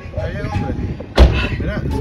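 A car door slammed shut once, about a second in, with a single sharp, heavy thud.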